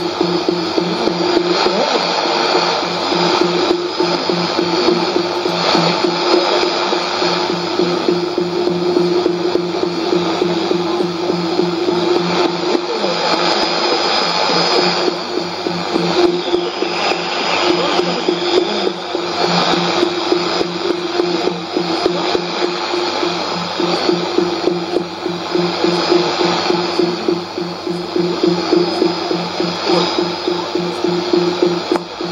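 Shortwave AM reception of 5990 kHz on a Sony ICF-2001D receiver: strange test sounds from the Media Broadcast transmitter at Nauen, a steady tone over a lower pulsing tone, in a thick wash of static. China Radio International's Russian service from Hohhot shares the channel.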